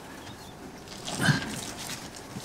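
A short whimpering cry about a second in, over faint rustling.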